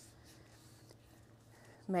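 Faint rubbing and rustling of cardstock as hands press down and crease a paper envelope fold. A woman's voice starts just at the end.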